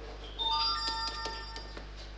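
A short electronic chime: a few clear, bell-like notes at different pitches, like a ringtone or notification sound. It starts about half a second in and lasts about a second.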